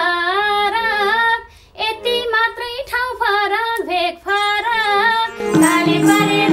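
A woman singing a Nepali dohori folk line in a high, wavering voice, in phrases broken by short pauses. Near the end the band comes in louder with harmonium, bamboo flute and madal drum.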